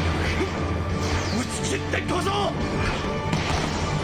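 Anime soundtrack: dramatic orchestral score with held notes, a brief voice, and the hard smack of a volleyball spike slamming the ball into the floor.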